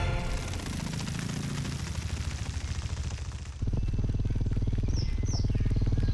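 Booted racket-tail hummingbird's wings humming as it hovers to feed, a low, rapidly pulsing buzz that gets suddenly louder about three and a half seconds in. Two short, high, falling chirps come about a second later.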